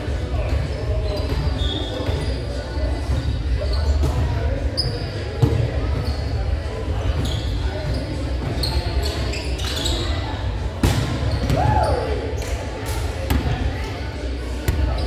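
Echoing gymnasium with volleyballs thudding against hands and the hardwood floor at irregular moments, short high sneaker squeaks, and players' voices in the background.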